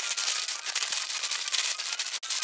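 Clear plastic LEGO parts bags crinkling and rustling steadily as they are handled and shuffled about, with many small clicks.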